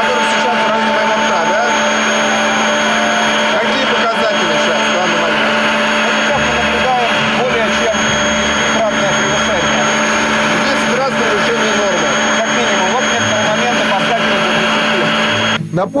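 A loud, steady machine drone with a constant high whine, with men talking over it; it cuts off suddenly near the end.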